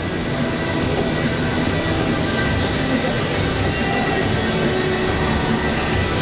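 Elliptical trainer in use: a steady mechanical rumble from its flywheel and moving parts, with no distinct knocks or pauses.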